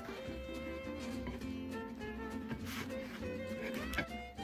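Background instrumental music with held notes that change every half second or so, and a light click near the end.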